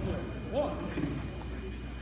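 A man shouts "Up!" once, about half a second in, over the faint scuffling and thuds of two wrestlers grappling on a gym mat.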